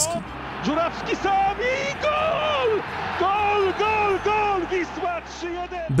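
A television football commentator calling the play in a raised, excited voice, the pitch rising and falling in repeated shouted phrases, over the steady noise of a stadium crowd.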